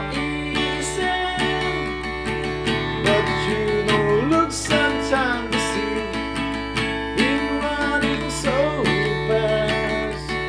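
Acoustic guitar strummed in a steady rhythm, playing full chords.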